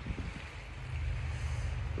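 Low, uneven rumble of wind on the phone's microphone, with faint outdoor hiss above it.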